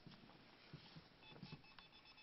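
Near silence: faint room noise with light clicks, and a faint high electronic beep tone coming in near the end.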